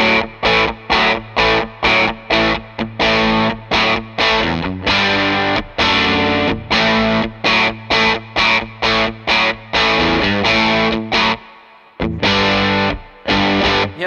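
Electric Telecaster played through an Electronic Audio Experiments Longsword distortion pedal: a riff of short, chopped, distorted chords, about two a second, stopping briefly near the end and then starting again.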